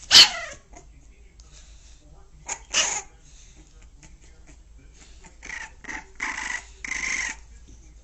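A dog barking. One sharp bark just after the start, falling in pitch, is the loudest sound; a second bark comes near three seconds in, and a run of shorter calls follows from about five seconds in.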